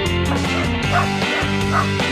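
Small dog yipping twice over music, once about a second in and again near the end.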